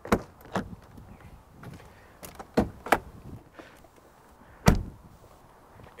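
Pickup truck driver's door: the latch clicks open, a few sharp clicks follow as the hood release is pulled inside the cab, and the door shuts with a solid thud a little before the end.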